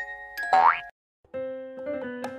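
Edited-in background music: bell-like mallet notes end in a quick rising cartoon-style sound effect about half a second in, then cut to dead silence. Soft keyboard music starts about a third of a second later.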